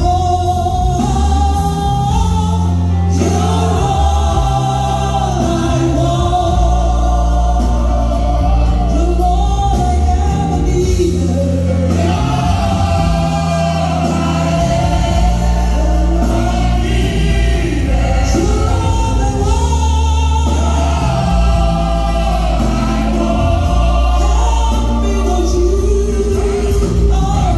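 Live gospel praise singing by a church worship team with band accompaniment, several voices singing together over a steady, heavy bass line.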